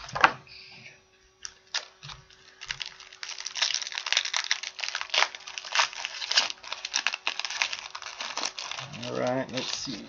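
Trading-card pack wrappers crinkling and tearing as hockey card packs are opened and the cards handled. The crackling is dense from about three seconds in. A short voiced sound comes near the end.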